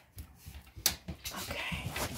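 A single sharp click about a second in as an electric fireplace heater is switched off, among light handling noises. A dog whines faintly.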